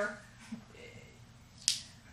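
A quiet pause in a small room, broken by one short, sharp click about a second and a half in.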